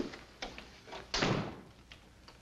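Glass-panelled office door closing: a couple of light clicks, then the door shutting with a thud a little over a second in, and a final light click of the latch.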